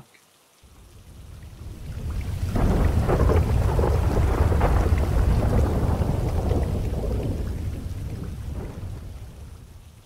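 A long, deep roll of thunder that swells over a couple of seconds, holds, then slowly fades away.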